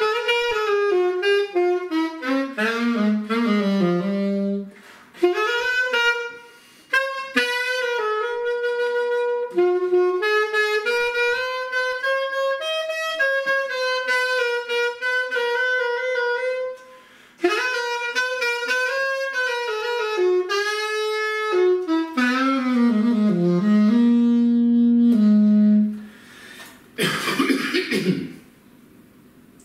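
Unaccompanied alto saxophone playing a solo in several phrases with short breaks, with quick falling runs that settle on held low notes, the last one sustained for a couple of seconds near the end.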